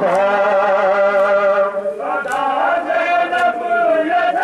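A group of men chanting an Urdu noha together in long held notes. A sharp slap comes about once a second, four in all: the men beating their chests (matam) in time with the lament.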